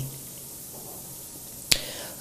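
Quiet room tone in a pause between speech, broken about three-quarters of the way through by a single short, sharp click.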